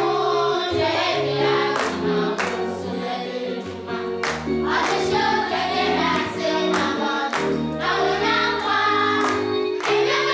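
A group of children singing together over an instrumental accompaniment with a steady beat.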